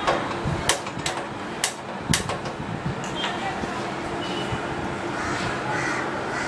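Gas stove burner being lit: about five sharp clicks from the igniter, roughly half a second apart over the first two seconds, then steady low noise.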